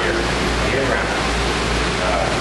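Steady rushing of water circulating through a home aquaponics system, with a low steady hum underneath.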